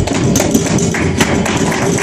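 Live flamenco: a dancer's zapateado, fast heel and toe stamps in dense percussive strikes, over palmas hand clapping and flamenco guitar.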